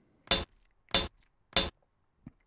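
Three short closed hi-hat hits, each a drum sample played by Ableton Live's Impulse drum machine, sounding about two-thirds of a second apart. They are the sample being auditioned as each hi-hat note is drawn into the MIDI note grid.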